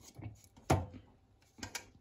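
A few light knocks and clicks as a hand blender is handled and set into a glass beaker, the sharpest about a second in. The blender is not running.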